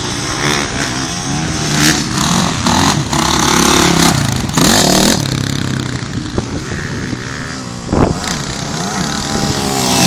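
Motocross dirt bike engine revving up and down as it is ridden through the gears, its pitch rising and falling repeatedly. A sharp thump about eight seconds in.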